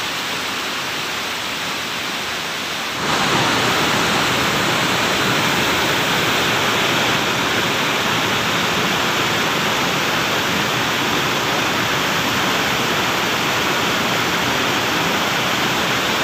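Waterfall and the rocky rapids below it, running steadily with fast, heavy water, swollen by the rainy season. The sound gets louder about three seconds in.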